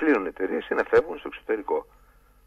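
Speech only: a voice talking in a radio interview, stopping shortly before the end.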